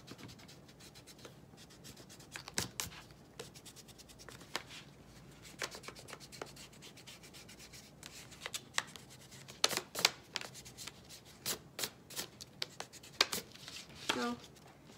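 Pencil eraser rubbing back and forth on a paper plate in short, irregular scrubbing strokes, rubbing out pencil guide lines, with a cluster of louder strokes about ten seconds in.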